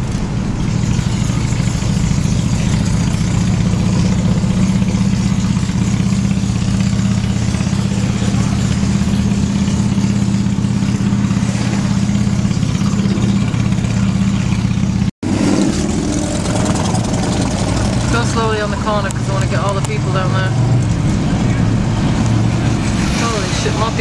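Car engine and road noise heard from inside the cabin while driving slowly: a steady low drone. It cuts out abruptly for an instant about fifteen seconds in, then resumes.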